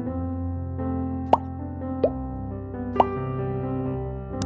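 Soft piano background music with three short plops, each rising in pitch, about one and a third, two and three seconds in.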